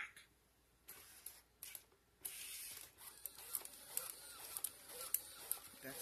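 WowWee RS Media robot walking slowly on a tile floor: from about two seconds in, its gear motors whir steadily with regular clicks from its feet and joints as it steps.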